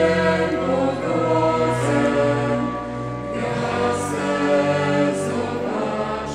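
Small mixed choir of men and women singing in harmony, holding long notes.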